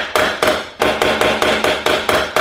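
A hammer striking metal again and again, about three to four even blows a second, each with the same short ringing tone: the sound of a dented vehicle body being beaten back into shape in a repair garage.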